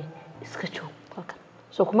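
Speech only: a woman speaking softly, almost whispering, with louder speech starting near the end.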